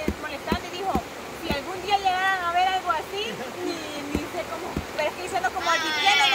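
Steady rush of a swollen river flowing past, with voices talking over it in snatches and a livelier burst of voices near the end.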